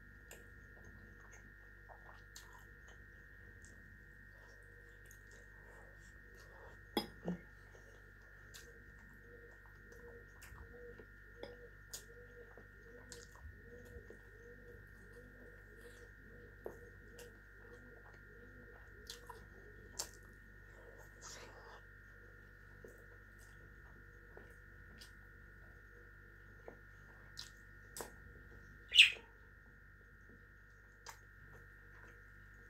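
Quiet eating sounds: scattered short clicks of a fork against a glass bowl and plate, over a steady faint hum. A caged pet bird chirps now and then, its loudest chirp, a short rising one, coming near the end.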